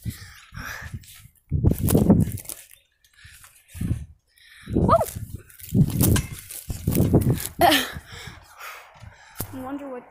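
A boy's wordless exclamations and breathing while jumping on a trampoline, with rumbling bursts from the shaking phone about once a second in time with the bounces. A couple of the cries rise sharply in pitch partway through.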